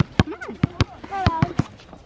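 A basketball dribbled on a hard outdoor court: several sharp bounces at uneven spacing, with children's voices in between.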